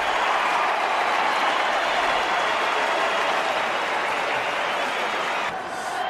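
Football stadium crowd cheering, heard in television broadcast audio: a loud, sustained roar as the crowd goes up, easing slightly near the end.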